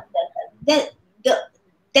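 A woman's voice in a few short, clipped bursts, one of them a spoken "No", separated by brief pauses, with a short silence before her speech picks up again.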